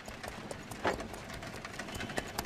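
Horse's hooves clip-clopping on a dirt road as it pulls a cart towards the listener, an uneven run of clicks with one louder knock just under a second in.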